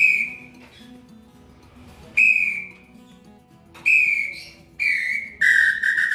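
A hand-held bird call (pio) blown in short whistled notes: four brief notes a second or two apart, each dipping slightly in pitch, then a longer, lower note held near the end.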